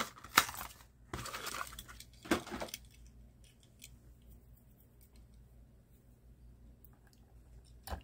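Plastic-and-card Hot Wheels blister pack being torn and crinkled open, a crackly run of tearing and clicks over the first three seconds. Then a few faint ticks of quiet handling.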